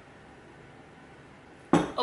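Quiet room tone, then near the end a single sharp glass knock, a mason jar set down on a hard surface.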